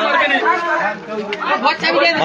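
Several people talking over one another: crowd chatter.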